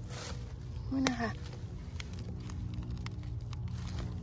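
A short rustle, then scattered faint small clicks and crackles over a steady low rumble, with a woman saying a few words about a second in.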